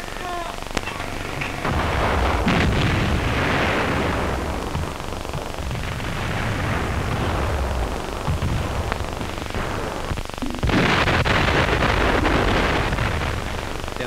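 Heavy fortress guns firing on an old film soundtrack: two long blasts, about two seconds in and about eleven seconds in, each followed by a rolling rumble that lasts a few seconds.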